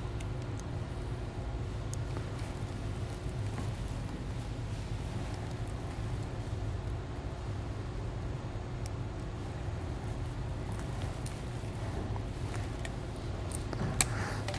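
Steady low background hum of a shop, with a few faint, scattered clicks of a hand wire crimper and wires being handled while a butt connector is crimped on.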